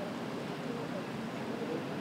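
Indistinct, far-off voices of people talking over a steady background hum of street noise.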